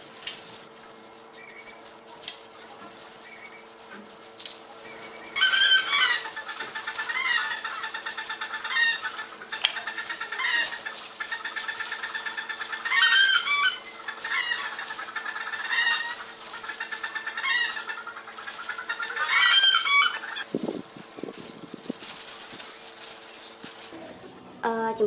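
A bird calling several times: rapid rattling pulsed calls in bursts of two to three seconds, each ending in a rising then falling note, over a steady low hum.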